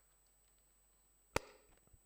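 Quiet hall room tone broken by a single sharp knock about a second and a half in, with a short ring after it.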